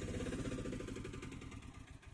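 Auto-rickshaw's small engine running steadily at low speed, fading away over the last half second.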